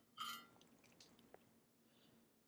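Near silence: room tone with a faint low hum, broken by one brief soft rustle about a quarter second in and a couple of faint light ticks near the middle.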